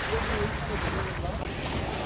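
Wind rumbling on the microphone over the steady wash of the sea against the shore.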